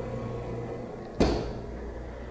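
Hinged side access door of a VirTis Genesis 25EL freeze dryer cabinet swung shut, latching with a single sharp clack about a second in.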